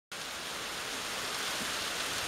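Sleet falling on the workshop roof, a steady even hiss.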